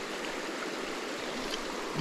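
Creek water running over rocks in a shallow riffle, a steady even rush.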